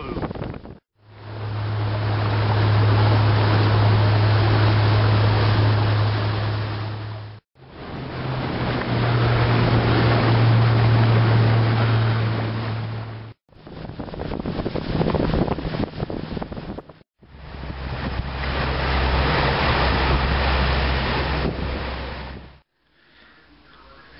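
A boat motor running with a steady low hum, under heavy wind noise on the microphone and the rush of water, in several stretches broken by short abrupt gaps.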